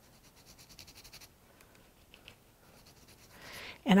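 Gloved fingertip lightly rubbing metallic wax creme over the raised design of a paperclay piece: faint, quick scratchy strokes for about the first second, then a single soft tick.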